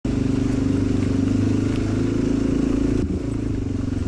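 Off-road motorcycle engine running at low speed under light throttle with a steady, even note, dipping briefly about three seconds in.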